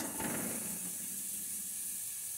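Chopped onion landing in hot olive oil in a stainless steel pot, then a steady high sizzle as it starts to fry.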